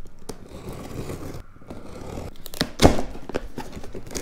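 Scissors cutting through packing tape on a cardboard box, with scraping and crackling of the tape and cardboard as the box flaps are pulled open. There is a sharp knock a little before three seconds in.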